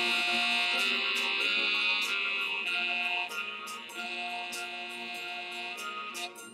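A four-bar excerpt of a song playing back as a loop in Ableton Live at 97 BPM, at its original speed and pitch because the clip is unwarped. It has sustained, droning pitched tones with a moving line of notes and a few sharp hits.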